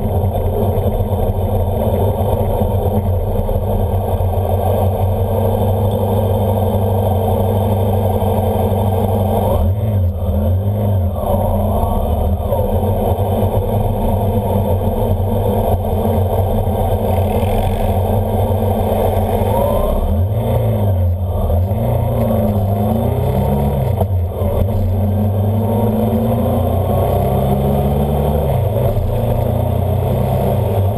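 Onboard vehicle engine running, with wind and road noise. Its pitch falls and rises with changes of speed about ten seconds in, and again from about twenty seconds in.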